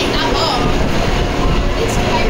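Roller coaster train rumbling steadily along its steel track, with people talking in the background.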